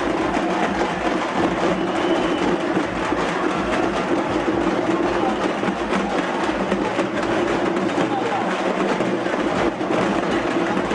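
Steady din of a dense street crowd, many voices at once, with frame drums beating among it.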